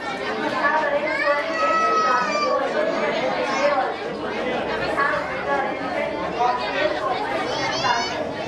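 Many voices talking over one another, mostly high children's voices, in a busy, echoing room: general chatter with no single speaker standing out.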